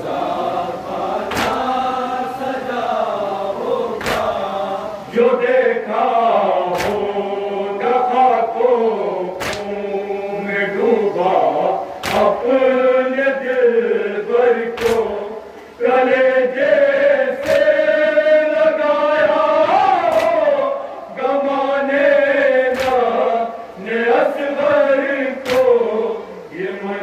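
Men chanting an Urdu noha (lament) into a microphone, a lead voice and others in chorus, over regular chest-beating matam: sharp slaps about one every second and a third, keeping the beat of the recitation.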